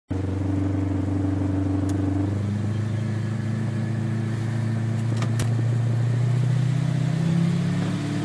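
Supercharged Holden 308 V8 running at steady low revs while cruising, heard from inside the ute's cab. Its deep, even engine note holds almost level in pitch, with a few faint clicks about two and five seconds in.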